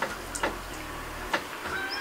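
A few sharp plastic clicks and knocks as the chainsaw's top cover is handled and opened, over a faint low hum.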